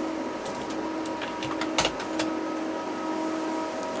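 A door being shut, a single sharp thump about two seconds in, with a few lighter clicks around it, over a steady hum of several fixed pitches from the running test equipment.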